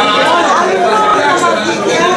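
Overlapping conversation among several people around a dinner table: general chatter with no single clear voice.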